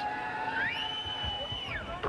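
Basketball arena crowd noise under a high squealing tone that rises about two thirds of a second in, holds for about a second and falls away again.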